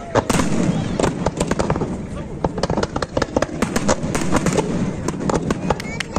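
Fireworks display: a rapid, unbroken string of sharp bangs and crackles as many shells burst overhead.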